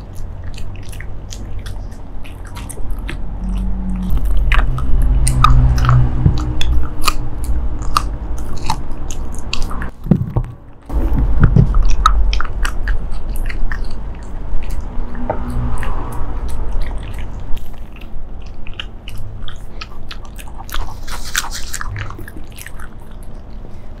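Shiba Inu biting and chewing a dried meat-stick treat: irregular crunching clicks with low thuds, easing briefly about ten seconds in.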